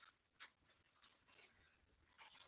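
Near silence, with faint scratchy traces and one small click about half a second in.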